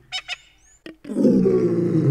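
Audio logo sting with animal-call sound effects: a few short clicks and a brief rising whistle, then from about a second in a loud, low, drawn-out roar-like call.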